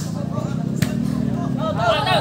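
A ball struck sharply once, about a second in, over crowd voices and a steady low hum.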